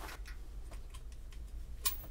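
Light metallic clicks and ticks from a brass-tipped LPG hand torch being unscrewed and taken apart, with one sharper click near the end.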